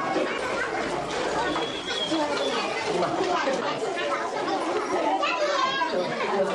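Several people talking at once: a steady babble of overlapping voices.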